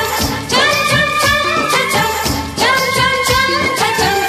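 A song with a steady beat and a singing voice holding long notes; new phrases come in about half a second in and again about two and a half seconds in.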